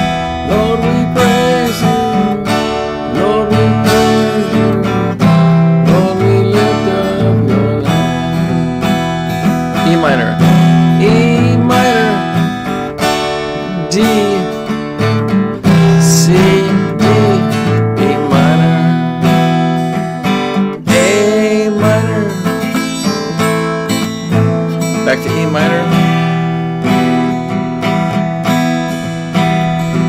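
Acoustic guitar strummed, playing the chords of a simple song in E minor, with a chord change every few seconds.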